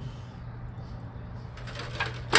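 A steady low hum under faint, even background noise, with no distinct event.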